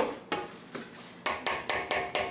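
A metal utensil knocking against a stainless steel stand-mixer bowl, about six sharp ringing strikes that come faster toward the end.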